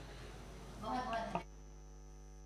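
Steady low electrical mains hum through the table microphones' sound system, standing out clearly in the second half. A faint, brief murmur of a voice about a second in.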